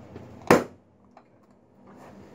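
One sharp, loud clack about half a second in as a chiropractic drop-table section falls under the thrust of a knee adjustment.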